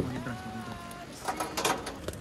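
A few light knocks and clatter of camp cooking gear being handled, after a short faint pitched tone in the first second.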